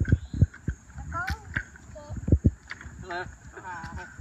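Brief, wordless voice sounds from people nearby over a run of irregular low thumps and knocks.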